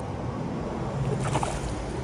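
Shallow creek water sloshing as a hand-held smallmouth bass is released and kicks away, with a small splash a little past a second in. A steady rushing noise runs underneath.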